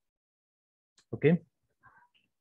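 Silence for about a second, then a man's voice asking a single short "¿Ok?" with rising pitch.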